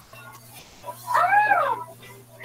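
A single drawn-out call, like an animal's, that rises and then falls in pitch, starting about a second in, over a steady low electrical hum.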